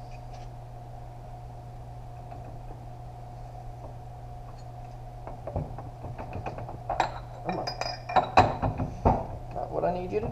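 Steel transmission parts (clutch drum, hub and snap rings) clinking and knocking together as they are handled and worked apart. The sharp metallic clinks, some ringing briefly, come in a busy cluster from about halfway on, over a steady low hum.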